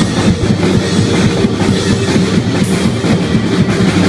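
Live blues-rock trio playing loudly: drum kit with rapid, steady strokes under electric guitar, a dense continuous wall of band sound.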